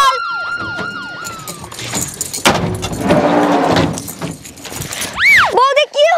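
Ambulance siren winding down: a steady tone that breaks into falling slides and stops within the first two seconds. A stretch of noise follows in the middle, and near the end a loud swooping tone that rises and falls once.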